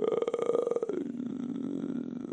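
A drawn-out, rough, croaking guttural growl in a person's voice, dropping lower about a second in and then holding.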